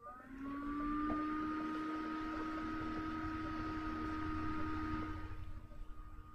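A steady machine whir with a whine, rising in pitch as it starts up and then holding steady, easing off near the end.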